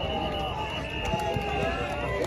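Distant voices of coaches, players and onlookers calling out and chattering around an outdoor football practice. A steady high tone is held for nearly two seconds under the voices and stops just before the end.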